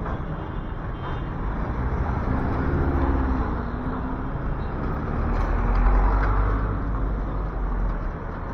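Diesel street traffic passing close: a jeepney's engine, then light trucks and a van pulling by, with a pitched engine note falling away about three seconds in. The loudest part is a deep engine rumble about six seconds in as a truck passes.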